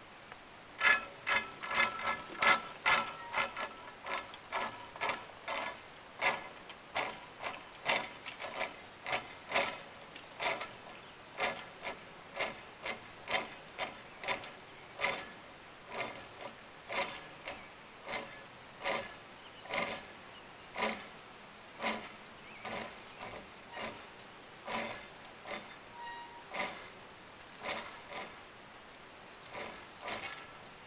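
Mechanical ratchet-like clicking from the zipline test rig: a long, slightly uneven train of sharp clicks, about one and a half a second, loudest in the first few seconds.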